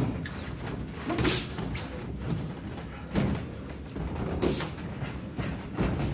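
Sparring punches landing: boxing gloves hitting in a handful of separate sharp thuds, one every second or so.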